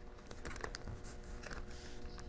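Faint small clicks and scratches of fingertips working a laptop battery's wire connector out of its motherboard socket, over a faint steady hum.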